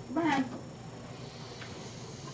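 Domestic cat giving one short meow near the start, rising and then falling in pitch.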